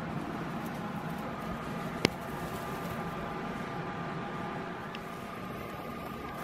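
Steady low hum and hiss of room noise, with one sharp click about two seconds in and a fainter tick near the end.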